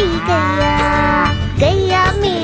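A cow mooing: one long call lasting about a second and a half, over children's-song backing music.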